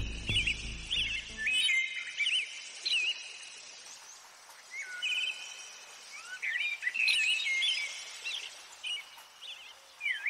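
Birdsong ambience: many short songbird chirps and whistles, some in quick trills, over a faint hiss. Background music fades out in the first two seconds.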